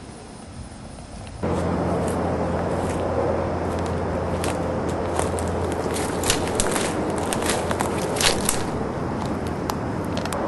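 Footsteps pushing through forest underbrush, dry leaves and twigs crackling in irregular snaps, over a steady noisy background with a low hum that comes in suddenly about one and a half seconds in.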